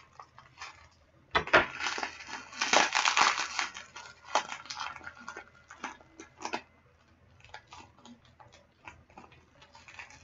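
Plastic packaging being handled and unwrapped: bursts of crinkling and rustling, loudest from about one to four seconds in, then scattered small crackles and clicks.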